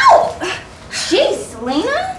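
A woman's wordless cries, one sliding down in pitch just after the start and another rising near the end.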